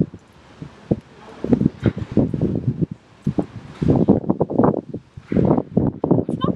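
Wind buffeting the microphone in uneven gusts, stronger from about a second and a half in.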